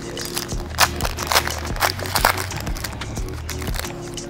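A foil trading-card pack wrapper being torn open and crinkled in the hands, a quick run of sharp crackles in the first half, over background music with a steady beat.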